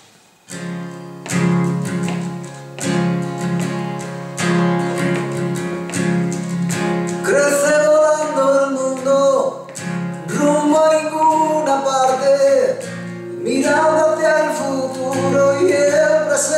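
Band music: strummed guitar chords with a steady low line start about half a second in, and a voice begins singing a melody about seven seconds in.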